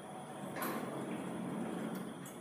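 Stainless-steel lift doors sliding shut, a steady sliding rumble that rises about half a second in and carries on to the end. The lift has been reopening its doors instead of closing them, which the uploader suspects may be a mechanical fault.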